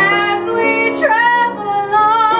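A soprano singing held notes with a wide vibrato over piano accompaniment, moving to a new note about halfway through.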